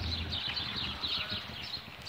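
A flock of house sparrows chirping together in a tree: a busy stream of short, overlapping chirps.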